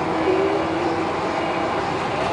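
Steady engine and road noise inside a moving bus, with a faint held whine.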